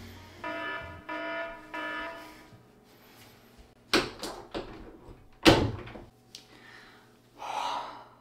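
An electronic alarm tone beeps three times in a row, then two loud thumps follow a couple of seconds apart. A breathy exhale comes near the end.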